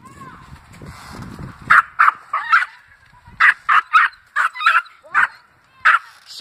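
A dog barking in short, sharp barks, about a dozen at irregular intervals, starting a couple of seconds in. A low rumbling noise comes before the barks.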